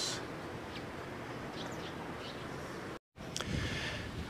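Steady outdoor background noise with a few faint, short bird chirps. The sound cuts out completely for a moment about three seconds in, where the video is edited.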